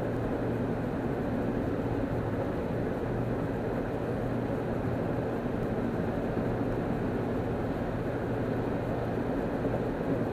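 Car cruising at freeway speed, heard from inside the cabin: steady road and engine noise, a constant low hum with tyre noise over it.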